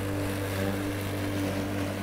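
An old corded electric lawn mower, about 40 years old, running with a steady hum as it is pushed across grass.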